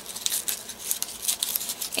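Twisted paper ribbon (paper twist) being pulled apart and unfurled by hand: a run of small, irregular crinkles and rustles of stiff paper.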